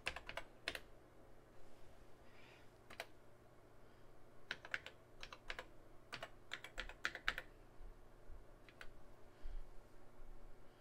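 Keys typed on a TRS-80 Model 4 keyboard: short runs of clicks with pauses between, over a faint steady hum.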